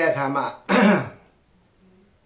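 A man's speech breaks off, and he clears his throat once, briefly, just under a second in.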